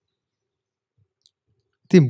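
Near silence with one faint click a little after a second in, then a man's voice starts speaking loudly right at the end.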